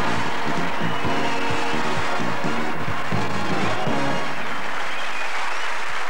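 A live stage band plays the end of a dance number, with the music stopping about four and a half seconds in as audience applause takes over.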